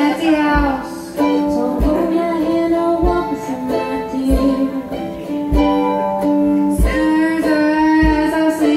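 Live acoustic band playing a song: a strummed ukulele and a second small string instrument, with voices singing. A deep beat thump lands about every second and a quarter.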